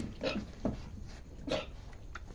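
Goat doe in labour giving three short, cough-like grunts as she strains to deliver her kid.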